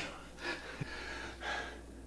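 A man breathing audibly: two soft breaths about a second apart.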